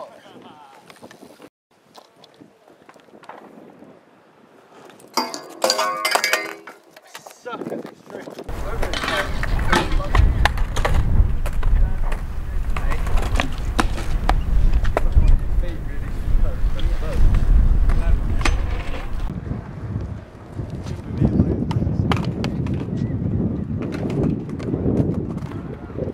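BMX riding on concrete: tyres rolling and many sharp clicks and knocks of the bike landing and hitting the ground. From about eight seconds in, heavy wind buffets the microphone, easing near the end.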